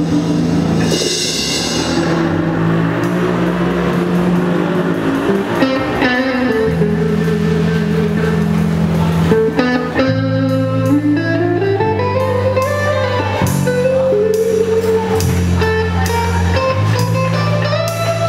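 Live band playing a slow rock song: electric bass holding low notes, electric guitars, and drums with cymbal strikes, over a lead melody that slides up and down between notes.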